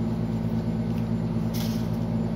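A steady low machine hum, with a brief soft rustle near the end as the card deck is handled.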